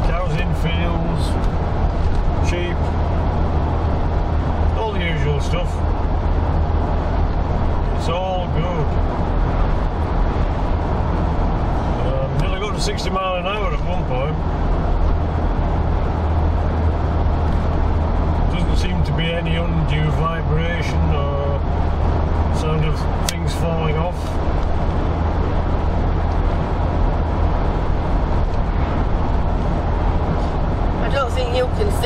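Steady low drone of a Land Rover Discovery 2 at cruising speed, engine and tyre noise heard from inside the cabin. Short stretches of a voice or pitched sound come and go over it.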